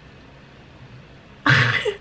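A quiet pause with only faint room tone, then near the end a short, sharp burst of breath from a woman, like a gasp, lasting about half a second.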